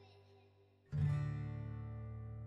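Background music on acoustic guitar: a held chord fades away, then a new chord is strummed about a second in and rings on, slowly dying away.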